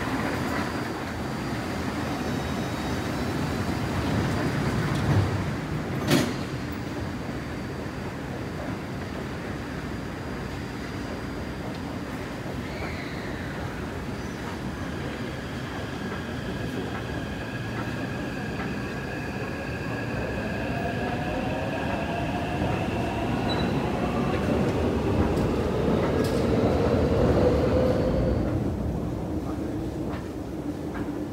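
Taipei Metro train pulling out of an underground platform: a steady rumble, then from about halfway a rising whine from the traction motors as it speeds up, getting louder toward the end and falling away just before it closes. A sharp knock about six seconds in.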